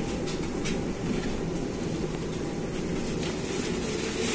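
Suburban electric train running, heard from on board: a steady low rumble with scattered clicks from the wheels on the track.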